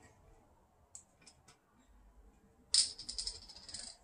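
Bottle of apple cider vinegar being handled: a few light clicks, then about a second of dense, rapid rattling clicks near the end.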